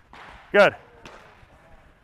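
A man's voice saying "Good" once, about half a second in, over low background sound.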